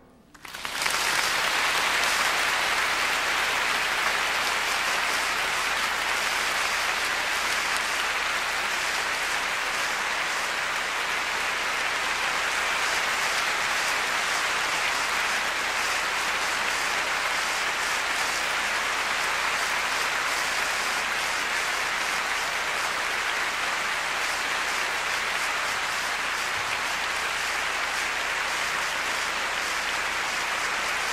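Large concert-hall audience applauding, breaking out about half a second in and then holding steady.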